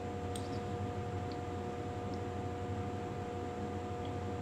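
Room tone: a steady low hum with two faint steady tones running under it, and a few faint short ticks in the first half.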